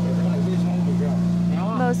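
A steady, loud low machine hum, with cats meowing over it several times, each cry rising and then falling in pitch.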